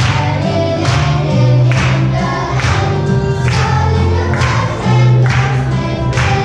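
A children's group singing a song over a backing track with a steady beat and a bass line.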